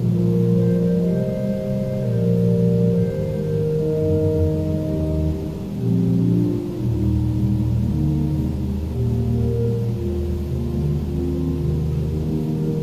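Organ music: slow, sustained chords of held notes that change every second or two, with a deep bass line coming in about seven seconds in.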